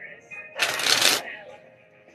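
A deck of playing cards riffled in the hands: one brief rattle lasting about half a second, starting about half a second in.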